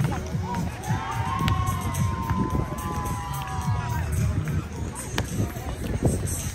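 Outdoor volleyball-match ambience: a steady low rumble full of quick thuds. A long held voice-like tone lasts about three and a half seconds in the middle, and two sharp knocks come, one early and one near the end.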